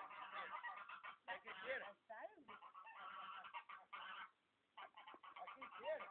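Domestic geese honking, many calls overlapping, with short pauses about two seconds in and just before five seconds.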